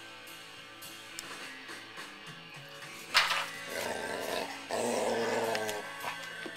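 A dog growling in two rough stretches of about a second each, around four and five seconds in, just after a sudden sharp sound, over background music.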